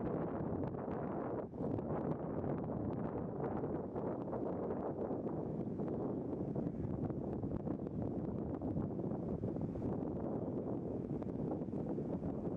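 Wind on the camera microphone: a steady, even rushing noise.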